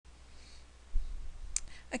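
A low thump about a second in, then a single sharp click, over faint hiss, with a woman's voice starting just at the end.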